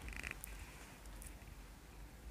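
Quiet room with a faint steady low hum and a few soft rustles and ticks, as hands hold still on the client's neck.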